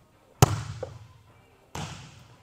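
An open hand striking a volleyball on a serve, one sharp smack about half a second in that echoes in the gym. A second, softer impact follows near the end.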